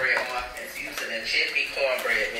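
A person talking.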